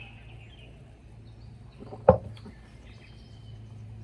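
Faint bird chirps outdoors over a steady low background hum, with a single sharp knock about two seconds in.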